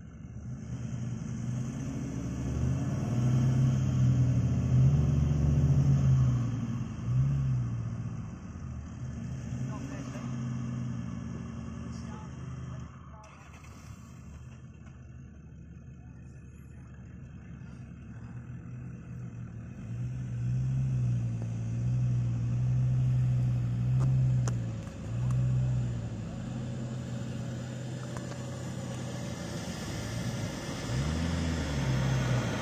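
Four-wheel-drive engine revving in soft sand during a winch recovery, its pitch rising and falling in two long spells with a quieter stretch between. A steady high whine runs through the first half and cuts off suddenly.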